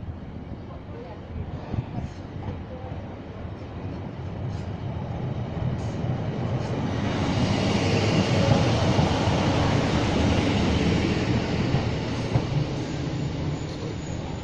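Class 153 single-car diesel multiple unit arriving along the platform. Its engine and wheels on the rails grow louder as it comes close, loudest about eight to eleven seconds in as it passes, then fade as it runs on by.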